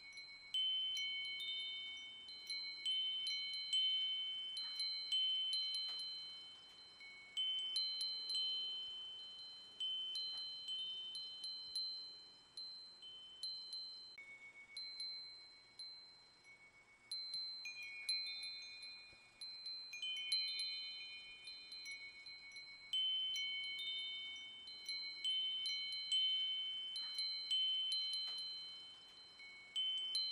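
Wind chimes tinkling: high metal tones struck at irregular moments, each ringing out and fading, often several overlapping.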